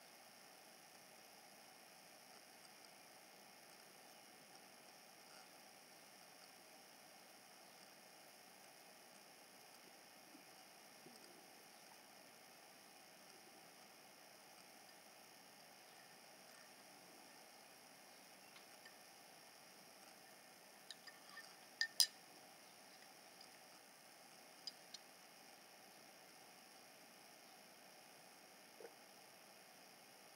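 Near silence with a faint steady hiss, broken by a few small sharp clicks and clinks about three-quarters of the way through and two more shortly after, from a wooden stir stick and plastic resin cup being handled.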